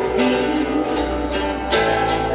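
Live music on a concert PA: a woman singing a slow ballad over a backing band with plucked guitar, holding long notes.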